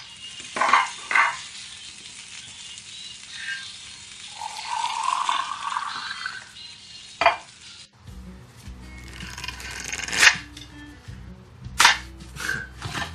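Sharp knocks and clatter of kitchen utensils, balls and a frying pan, with a stretch of noisy sizzling or pouring in the middle. After about eight seconds the sound changes abruptly to a different recording with a few more sharp clicks.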